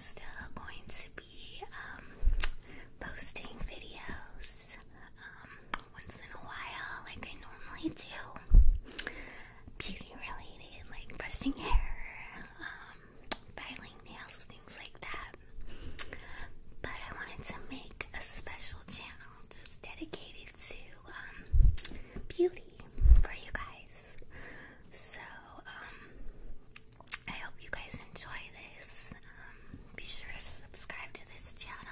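A woman whispering close to the microphone, with small clicks throughout. About five loud, low thumps come in amongst the whispering, two of them close together near the end.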